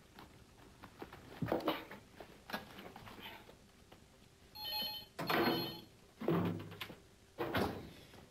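A telephone ringing briefly about halfway through, with scattered knocks and clatter of things being handled before and after.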